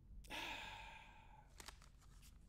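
A person sighing: one breathy exhale of about a second, followed by a few faint clicks of clear plastic card holders knocking together as they are stacked.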